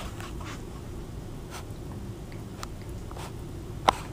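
Scattered light clicks and taps over a low rumble of handling, with one sharp tap near the end.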